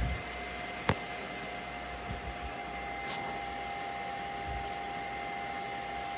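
Anycubic Kobra 2 Max 3D printer's cooling fans running steadily, an even whir with a faint steady whine, while the print head sits parked mid auto-level. A single sharp click about a second in.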